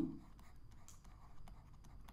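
Faint scratches and small taps of a stylus writing a word by hand on a tablet.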